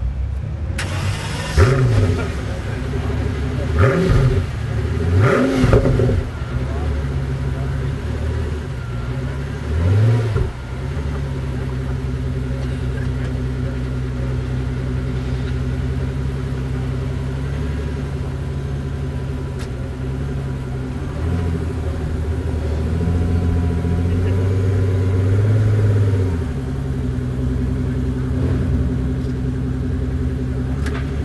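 Pagani Huayra's twin-turbo V12 idling, blipped in four short revs in the first ten seconds or so. It then idles steadily, with revs lifting slightly for a few seconds after the twenty-second mark.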